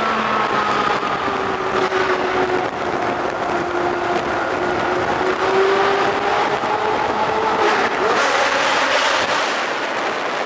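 Car engine and tyre noise while driving through a road tunnel, the engine note rising slowly and falling again over several seconds.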